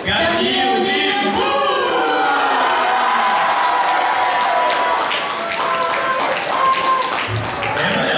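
Voices singing together into microphones, with long held notes through the middle.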